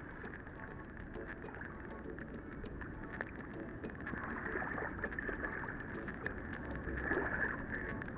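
Steady low rushing noise of water and air at the shoreline, with frequent small clicks and taps from a handheld camera being moved close around a sea star.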